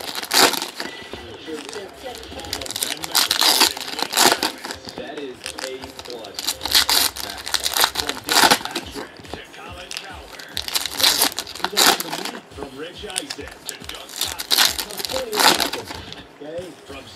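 Foil trading-card pack wrappers crinkling and tearing as the packs are opened and the wrappers tossed aside, in loud short bursts every second or two.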